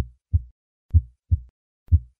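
Recorded heart sounds, a clear lub-dub of first and second heart sounds at about one beat a second, with nothing heard between them. These are the plain beats that play before the systolic ejection murmur of hypertrophic cardiomyopathy is added.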